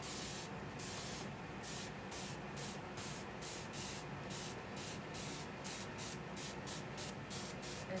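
Hand-pumped fine-mist spray bottle sprayed over and over, about three or four short hissing sprays a second, wetting marker ink on a canvas so the colour spreads.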